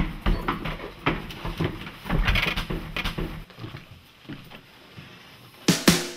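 Irregular knocks, bumps and rustling of someone moving about and handling things in a small room. A cluster of louder knocks comes near the end.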